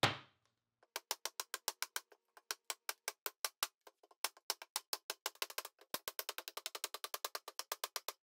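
Tin bronze hatchet chopping into a clamped fresh pine board: a knock at the start, then from about a second in a long run of sharp woody knocks, several a second, coming faster toward the end.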